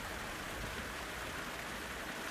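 Shallow spring-fed creek water running over rocks, a steady, low rushing sound.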